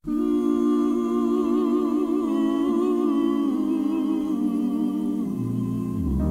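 Gospel song intro of wordless vocal harmony: several voices humming sustained chords with vibrato, moving to a new chord about every second or two.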